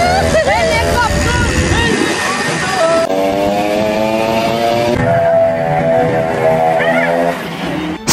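Wind rushing over the microphone and engine noise of a moving vehicle, with men whooping and shouting during the first couple of seconds. From about three seconds in, a steady droning tone with several overtones runs for about four seconds, sinking slightly in pitch.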